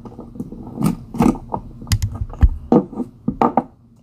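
Irregular plastic clicks, taps and rattles of a GoPro Hero 8 action camera being handled to take its battery out, with a couple of duller knocks about two seconds in.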